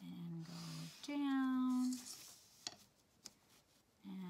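A woman humming a few held notes, the second one the loudest, then two faint ticks.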